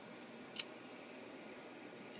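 A single sharp click about half a second in, a laptop keyboard key being pressed, over a low steady hiss.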